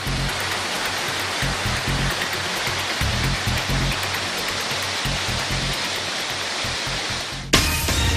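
River water rushing through rapids below a dam spillway, a steady hiss, under background music. Near the end a sudden loud hit opens the news ident music.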